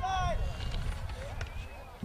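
The tail of a man's spoken word, then low outdoor background: a low rumble with faint, distant voices, fading slightly towards the end.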